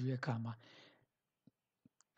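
A person speaking for about half a second, then near quiet with two faint short clicks, about a second and a half in and just before the end.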